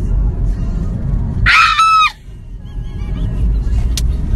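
A loud, high-pitched human scream of about half a second, a second and a half in, falling in pitch as it cuts off, over the steady low rumble of a car cabin on the road.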